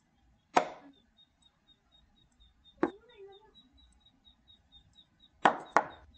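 Sharp knock-like move sounds as chess moves are played on a digital board. One comes about half a second in, one near the middle, and two come in quick succession near the end. A faint, fast, even ticking runs underneath.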